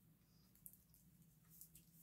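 Near silence: room tone, with a faint brief tick about two-thirds of a second in.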